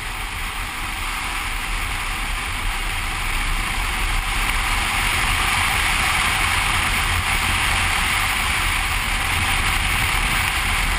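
Motorcycle riding at speed on a winding road: steady wind rush and road noise, with the engine's rumble beneath. It gets a little louder about four seconds in.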